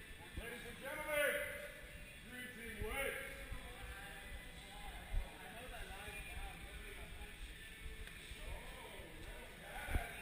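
Several people talking indistinctly while walking as a group, with footsteps and a single thump about five seconds in.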